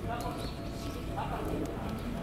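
Japanese level-crossing warning bell ringing, with a person's voice over it and a steady low rumble underneath.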